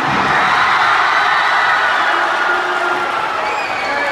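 A large crowd of students in the bleachers cheering and shouting, loud and sustained.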